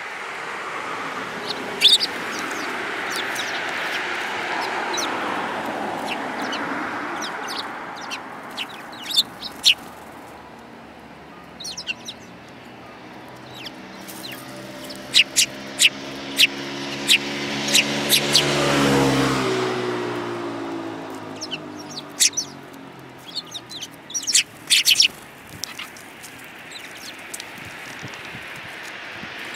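Eurasian tree sparrows giving short, sharp chirps in scattered clusters as they feed from a hand. A low droning hum swells to its loudest about two-thirds through, its pitch dropping as it fades away.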